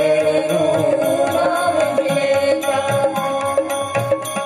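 Gujarati devotional bhajan performed live: a voice sings with harmonium accompaniment, the melody wavering for the first couple of seconds before settling on a held note, over steady percussion strokes.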